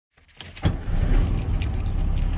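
Air-cooled Volkswagen Beetle engine starting: a few light clicks, then the engine catches about half a second in and settles into a steady, evenly pulsing idle.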